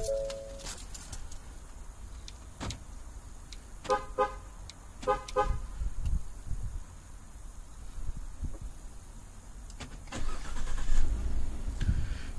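Pickup truck's electronic chime: a short tone right at the start, then two quick bursts of beeps about four and five seconds in, with a few faint clicks over a low background hum.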